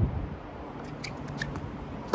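Steady outdoor background noise, then from about a second in a run of small, sharp, irregularly spaced clicks.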